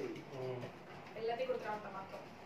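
A person's voice, low and muffled, in two short stretches.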